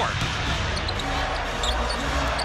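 Basketball arena ambience during live play: a steady crowd din with a basketball bouncing on the hardwood court.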